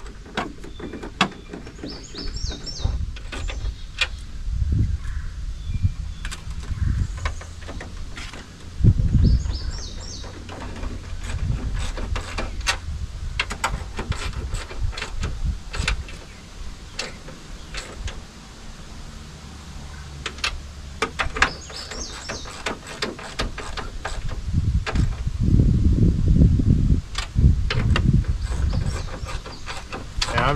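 Irregular clicks, knocks and low thumps of an aftermarket truck side mirror being worked by hand against the door to seat its locator pin before the bolts go in. Birds chirp briefly three times in the background.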